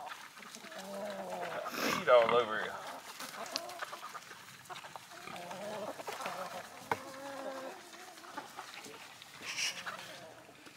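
Chickens clucking and calling. There are several separate calls, the loudest about two seconds in.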